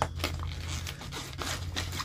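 The zipper of a fabric tool pouch being pulled open, a rasping run of short strokes, with the bag's cloth rustling in the hand.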